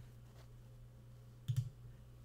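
A computer mouse click about one and a half seconds in, pressing a button on screen, over a faint steady low hum.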